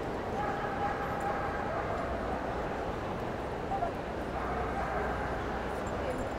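A dog whining, two drawn-out whines about a second long each, over the steady background murmur of a large hall.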